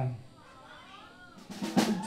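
A short drum roll on a rock drum kit's snare, a quick cluster of sharp strokes starting about a second and a half in, after a low hush.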